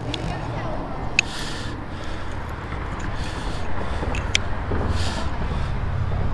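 A steady low rumble, with a few short sharp clicks as rusty iron railroad spikes stuck to a pull magnet are handled and knock against it.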